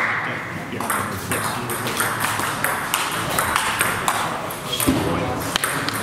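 Table tennis balls clicking off bats and tables during play, a run of sharp irregular ticks, over voices echoing in a large sports hall.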